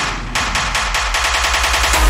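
Hardtekk build-up: an electronic drum roll whose hits come faster and faster until they run into a rapid rattle, over steady synth tones.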